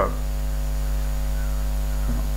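Steady electrical mains hum: a low drone with a ladder of fainter higher tones above it, unchanging throughout.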